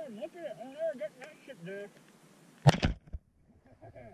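A voice with wavering, bending pitch for about the first two seconds. Then a loud thump about three-quarters of the way through, followed by a brief moment of near silence.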